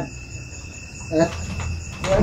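Crickets chirping steadily in the background, with one brief vocal sound from a man about a second in.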